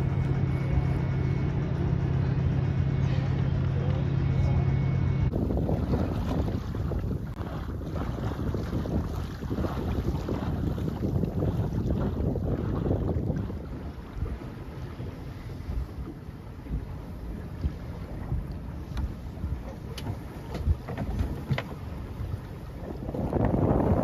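Wind buffeting the microphone and water rushing along the hull of a small sailboat under sail, louder in the first half and quieter after about thirteen seconds. It opens with a steady low hum that cuts off suddenly about five seconds in.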